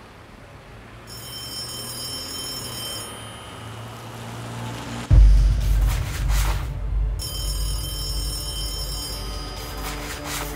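A telephone ringing twice, each ring about two seconds of high, steady tones, the second starting about four seconds after the first ends. About five seconds in, a sudden loud deep bass hit starts a low drone, with brief whooshes.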